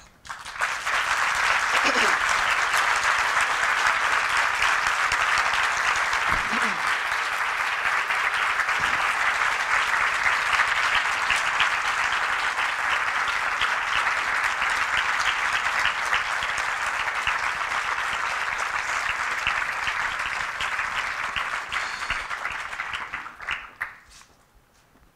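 A large audience applauding steadily for over twenty seconds, dying away shortly before the end.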